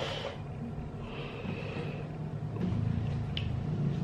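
Mouth and breath sounds of a person eating sour fruit: breathing through the nose and chewing, with a small click a little over three seconds in.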